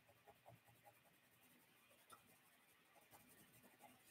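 Very faint scratching of a coloured pencil shading on watercolour paper, in quick short strokes, against near silence.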